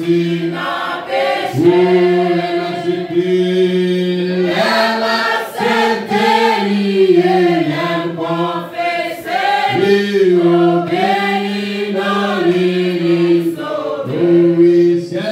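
Church congregation singing a hymn together, many voices holding long notes that step up and down in pitch.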